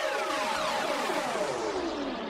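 Synthesized electronic jingle: a cluster of tones sliding steadily downward in pitch, a broadcast sting for the score update.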